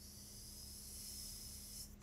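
A steady, high hiss of breath drawn or pushed through the teeth, lasting nearly two seconds and cutting off suddenly just before speech resumes.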